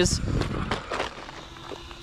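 Traxxas Sledge electric RC monster truck rolling in over gravelly dirt, its tyres crunching and rattling on stones, the noise fading within about a second as it slows to a stop.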